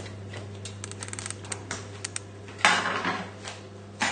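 A run of light clicks, then about two and a half seconds in a metal frying pan is set down on the worktop with a short clatter and scrape.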